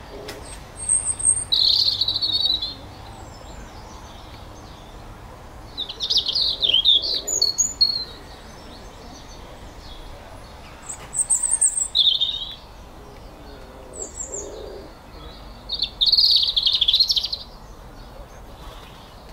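A songbird singing five short phrases of high chirps and trills, each lasting a second or two, with a few seconds between them, over a steady faint background hiss.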